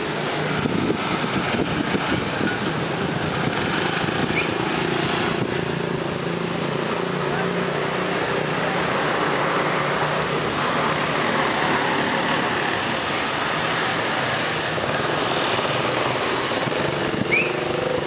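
Street ambience: a steady wash of traffic noise from passing motorbikes and vehicles, with voices talking in the background. There are two short high chirps, one about four seconds in and one near the end.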